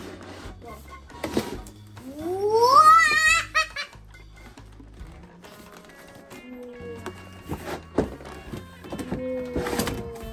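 A child's high, rising squeal that wavers at its top, about two seconds in and the loudest sound, over music playing in the background, with a few knocks from the boxed toy set being handled.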